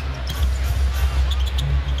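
Arena sound during live basketball play: a steady, bass-heavy music beat from the arena PA over crowd noise, with the basketball being dribbled.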